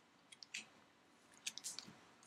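Faint, scattered light clicks and crinkles of trading cards and plastic packaging being handled on a tabletop.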